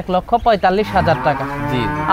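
A cow mooing: one long, steady moo of about a second that begins about halfway through.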